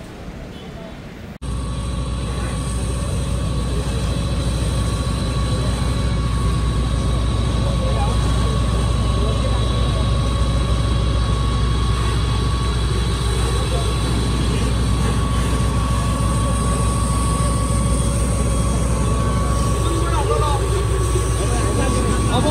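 A fire engine's pump running steadily, a loud low drone with a constant high whine, mixed with the hiss of a hose jet spraying water onto a burning car. It starts abruptly about a second in.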